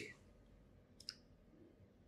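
Near silence: room tone, with one faint short click about a second in.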